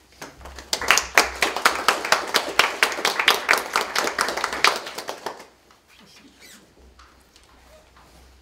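A small audience applauding, starting about half a second in and dying away after about five seconds.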